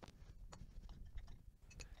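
Near silence: faint room tone with a few faint, sharp clicks.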